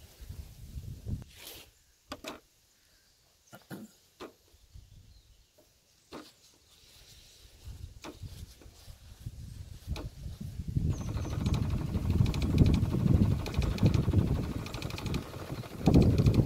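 Bosch Tassimo pod coffee machine starting a brew: a few faint clicks at first, then about eleven seconds in its pump starts and runs loudly and steadily, dispensing into a paper cup.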